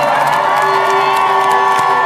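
Large stadium concert crowd cheering and screaming, with many held high voices, as the band's music drops out near the start.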